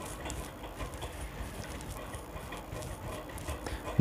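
Faint, steady background noise with light scratching of a pencil on gypsum board as an arc is swung from a tape measure used as a compass.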